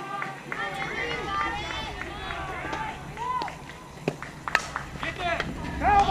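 Young girls' voices cheering and chanting in high, sing-song calls during a softball at-bat. About four and a half seconds in there is a sharp crack of the bat hitting the ball, and louder shouting follows near the end as the batter runs.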